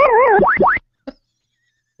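A comedic cartoon 'boing'-type sound effect: a pitched tone warbling quickly up and down, then two fast upward swoops, cut off a little under a second in. A short click follows just after a second, then silence.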